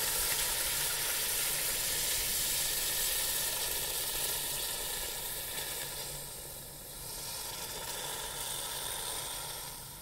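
A still very hot aluminium casting sizzling and hissing as it is quenched in a bucket of water, the hiss easing off in the second half as it cools.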